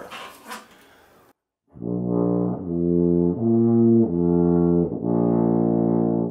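Tuba playing a slurred run of about five sustained notes, starting about two seconds in, stepping up in pitch and back down. The notes are changed with the lips alone, by speeding up or slowing down their vibration, not with the valves.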